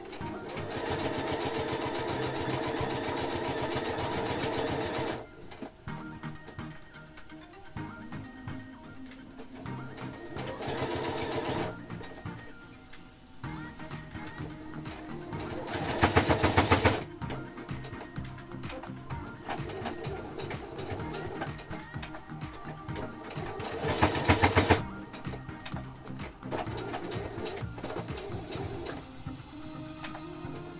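Domestic electric sewing machine stitching in bursts: a run of several seconds at the start, a shorter one partway through, and two brief, louder fast runs later. Background music plays underneath throughout.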